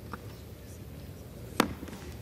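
Low background noise of the House chamber during a roll-call vote, with a faint click near the start and one sharp knock about a second and a half in.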